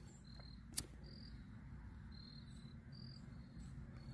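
A pocket Bic lighter struck once, a single sharp click about a second in, lighting a fire-starter cube. Faint short high-pitched chirps sound throughout.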